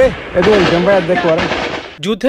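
A single loud boom of gunfire right at the start, followed by people's voices talking over a noisy background.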